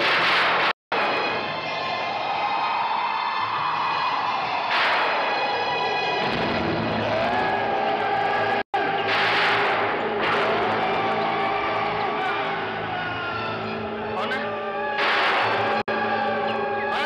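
Eerie horror background score: sustained tones with wavering, gliding notes, broken by several short hissing swells every few seconds. A deeper drone comes in about six seconds in, and the sound drops out briefly twice at edits.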